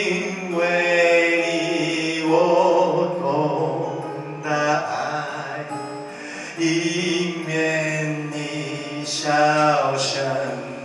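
A man singing a slow song with long held notes, accompanying himself on acoustic guitar.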